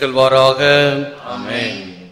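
A priest's voice chanting a liturgical refrain in long, drawn-out sung syllables, fading away near the end.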